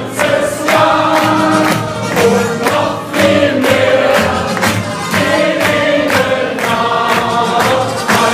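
Loud party music with many voices singing together over a steady beat of about three strikes a second, with hand-clapping along to it.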